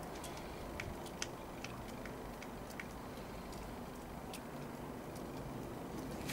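Quiet steady background hiss with a few faint, scattered clicks.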